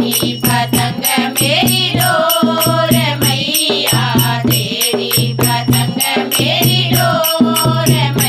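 A group of women singing a devotional nirgun bhajan together, accompanied by a dholak drum and hand-clapping that keep a steady beat.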